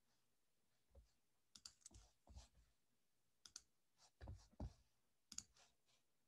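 A dozen or so faint clicks at a computer, many in quick pairs, starting about a second in, over near silence: the mouse and keys being worked to start a screen share.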